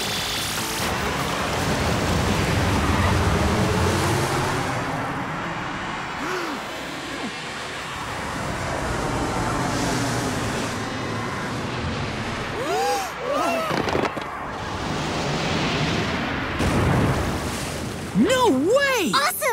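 Cartoon action sound effects: a loud, steady rushing and rumbling effect for the glowing ship being lifted, over background music. There are brief cries about two-thirds of the way through.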